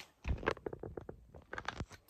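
Irregular soft clicks and knocks of handling and movement, as someone kneels on carpet beside a hard plastic case.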